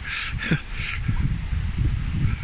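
Wind rumbling on the microphone, with handling noise, and two short breathy puffs in the first second.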